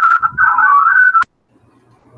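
High, wavering whistled tones shifting in pitch, which cut off suddenly a little over a second in, followed by a faint low hum.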